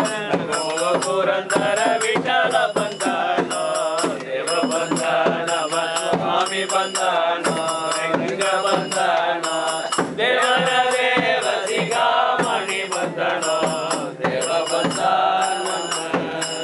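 Group of voices chanting a Hindu devotional hymn together, with a steady percussion beat of about two strokes a second.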